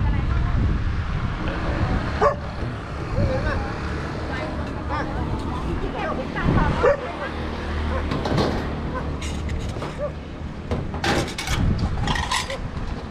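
Street ambience at an open-air roadside food stall: background voices and passing traffic under a steady low rumble, with a dog barking a few times.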